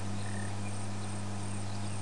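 Insects chirping in a thin, high-pitched pulse a few times a second, over a steady low hum.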